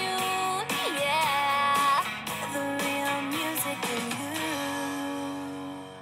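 Children's cartoon pop-rock song reaching its end: sung voices hold long final notes over strummed guitar and band. It plays from a laptop's speakers, and the music eases off a little near the end.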